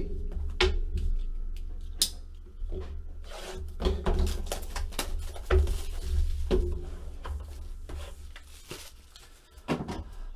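Plastic shrink wrap being torn and crinkled off a trading-card box, with scattered sharp clicks and knocks from handling the cardboard box, over a low steady hum.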